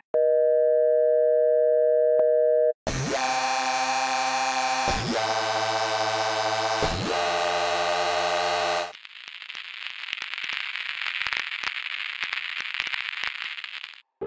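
Surge hybrid software synthesizer playing FX presets: first a steady buzzing tone, then after a brief gap a dense pitched chord struck three times, each strike opening with a short rising swoop, and from about nine seconds in a crackling, hissing noise texture.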